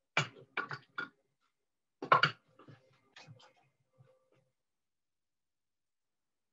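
Sharp wooden knocks and clatter from handling a wooden four-shaft loom and its shuttle: a quick run of knocks in the first second, the loudest cluster about two seconds in, then a few fainter taps.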